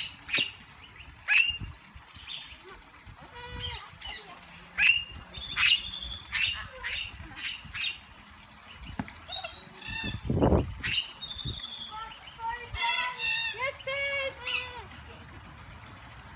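Dingoes whining and yelping in many short, high cries that drop in pitch, waiting to be fed. A brief low sound comes about ten seconds in.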